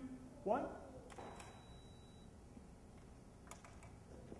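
Faint camera shutter clicks at the end of a countdown: one about a second in, then a quick cluster of clicks near the end.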